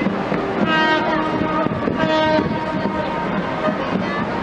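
A ship's horn sounding a steady, one-pitched blast in two parts in the first half, over wind and harbour background noise.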